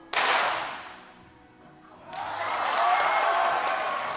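Two .22 sport pistols fired at almost the same instant, the shots echoing and fading in the range hall. About two seconds later a swell of spectators' cheering rises and holds, reacting to both shots hitting.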